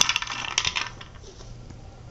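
A few pieces of dry kibble rattling and clicking inside a nearly empty hard plastic cube food-puzzle toy as a cat paws it over, a clattery burst that stops about a second in.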